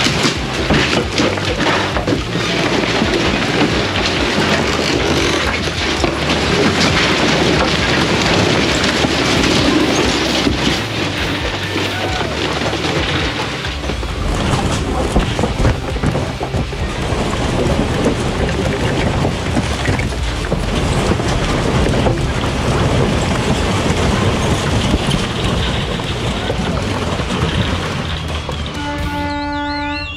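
Background music over the creaking, crashing and rumbling of a wood-frame house caving in as it is pulled down, with timber and debris falling.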